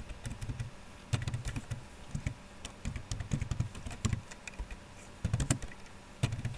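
Typing on a computer keyboard: irregular keystrokes, with a few louder clicks about a second in and near the end.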